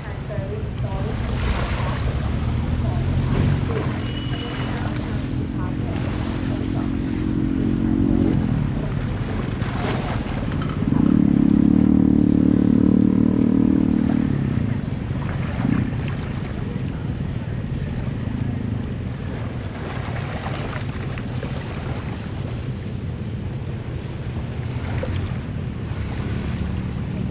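Small sea waves washing in, with wind rumbling on the microphone. Twice a low, steady droning tone rises over it, the louder one lasting about three seconds near the middle.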